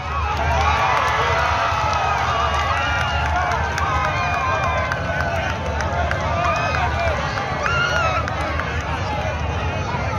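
A crowd of spectators shouting and cheering, many voices at once, swelling suddenly at the start and carrying on, over a steady low hum.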